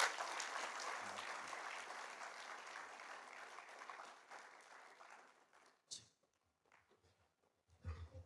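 Audience applauding, dying away over about five seconds. Then near silence, with one short click about six seconds in.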